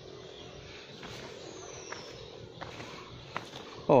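Footsteps on a paved forest trail: a few light scuffs and taps over the steady ambience of the woods. A faint high whistle glides downward about a second and a half in.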